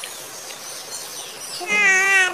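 A kitten meows once, starting near the end: one long call that falls slightly in pitch.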